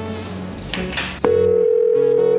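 Telephone ringback tone, a loud steady single mid-pitched tone that starts just over a second in and holds: an outgoing mobile call ringing at the other end. Before it, under background music, there is a short clatter as cardboard cases of bottles are set down on a bar counter.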